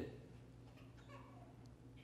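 Near silence: room tone with a low hum, and a faint brief sound about a second in.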